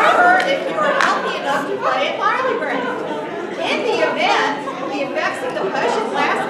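Speech: several voices talking indistinctly.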